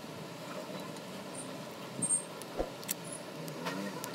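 A few light clicks and taps as fingers handle and press a smartphone's screen and frame, starting about halfway in, over a steady low background hum.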